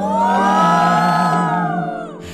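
A group of voices letting out one long drawn-out 'ooh' that rises, holds and falls away over about two seconds. Soft background music runs underneath.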